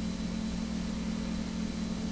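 Steady low hum with a faint even hiss: background room tone.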